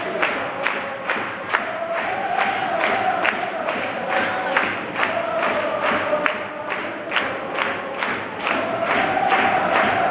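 A large crowd of football supporters singing a chant together to a steady beat, about two to three beats a second.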